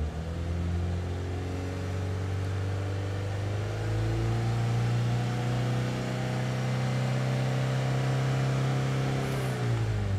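Mazda 2's 1.5-litre four-cylinder petrol engine running steadily, heard from inside the cabin, with the throttle held slightly open. Its speed rises slowly over the first half, holds, then falls back toward idle near the end.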